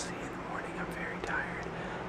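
A young man whispering close to the microphone, breathy and low, over a steady low hum.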